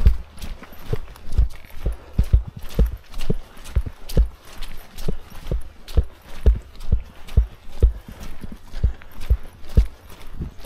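Hiker's footsteps on a muddy, leaf-covered dirt trail at a brisk walking pace, about two dull thuds a second in a steady rhythm.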